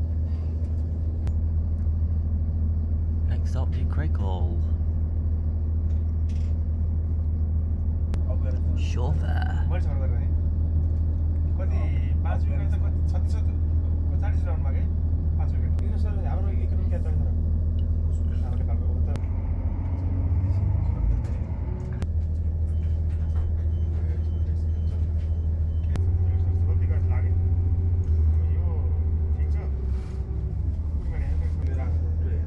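Class 170 Turbostar diesel multiple unit under way, heard from inside the carriage: a steady low drone from the underfloor diesel engine with the wheels rumbling on the rails. About 20 s in the engine note shifts, and from about 26 s it gets louder with an added higher note.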